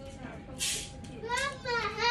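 A young child's high-pitched voice speaking in the second half, after a short hiss. A faint steady tone hums underneath.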